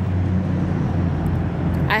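Steady low rumble of street traffic, a motor vehicle's engine running nearby.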